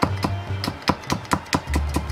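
Chef's knife slicing a garlic clove on a plastic cutting board, the blade knocking the board in quick, regular taps about five a second.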